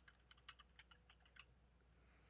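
Faint computer-keyboard typing: a quick run of about a dozen keystrokes that stops about a second and a half in.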